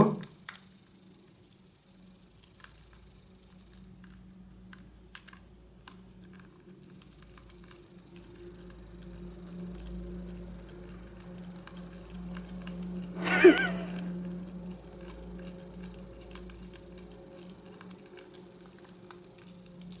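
Small screwdriver driving an M3 bolt through a 3D-printed plastic extruder body: faint, scattered clicks and scrapes of metal tool and bolt on plastic over a low steady hum. One brief louder sound comes about two-thirds of the way through.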